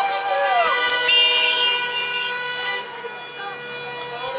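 Car horns honking in celebration of a goal, several steady horn tones held together over a shout. The horns are loudest in the first two and a half seconds and thin out toward the end.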